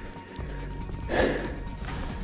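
A person's single heavy breath out, about a second in, from a hiker on a mountain trail.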